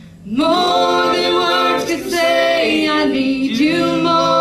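Church praise band voices singing a worship song in harmony, with little or no instrumental backing. After a brief gap the voices come in with a rising note about a third of a second in and hold long sustained notes.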